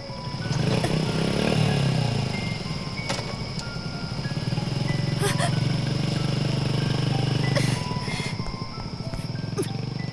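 Small step-through motorbike engine starting to pull away about half a second in, then running steadily and cutting off about two seconds before the end.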